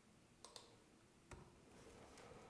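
Faint clicks of a computer keyboard as a date is keyed in: a quick pair about half a second in and one more a little after a second.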